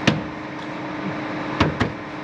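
Three dull knocks, one just after the start and two close together near the end, over a steady low hum.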